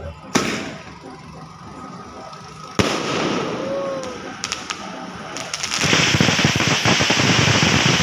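Fireworks: a sharp bang just after the start and another a little before three seconds, each trailing off in a hiss. From about six seconds a fountain firework sprays sparks with a loud, steady crackling hiss.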